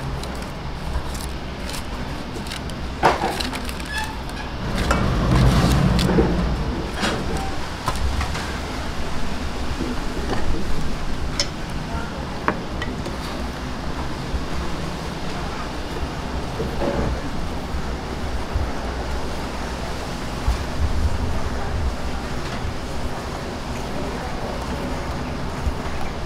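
Baking paper rustling and crinkling as it is handled and pressed into a round aluminium pan, with scattered light taps and clicks, over a steady low background hum.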